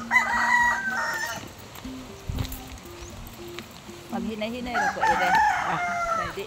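A rooster crowing: one long call at the start lasting about a second and a half.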